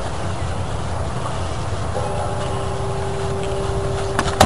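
Steady outdoor background rumble and hiss, with a faint steady hum that comes in about halfway through.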